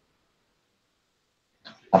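Near silence: the audio drops out entirely in a pause, and a voice starts speaking just before the end.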